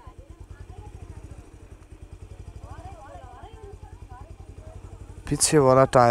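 Motorcycle engine running steadily at low revs, with even, rapid firing pulses. Faint voices come in about halfway through, and a loud voice starts near the end.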